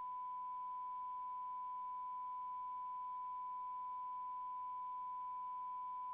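Steady electronic test tone: one pure, unwavering pitch held without change, of the kind put on a broadcast recording as a reference tone.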